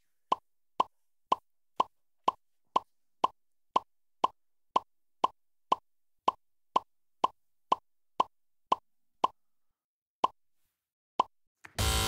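Game-show letter-reveal sound effect: a short electronic blip about two times a second, each one a letter appearing on the quiz board. Near the end the blips pause, then come about once a second before stopping.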